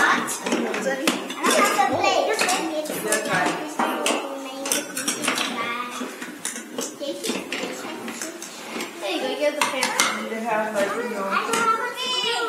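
Clinking and clattering of small bowls, dishes and chopsticks being handled on a table, repeated clicks throughout, with children's voices over it.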